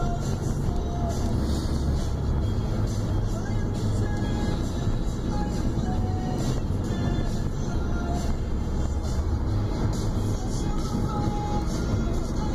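Car cabin sound while driving: a steady low road and engine rumble, with music playing in the cabin over it.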